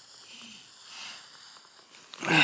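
A person's soft breathing: a few faint, breathy puffs of air between bouts of laughter.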